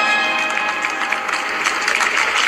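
Audience applause building in a large hall while ceremony music fades out under it.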